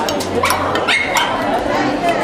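A dog barks a few times about half a second in, over the continuous chatter of people talking.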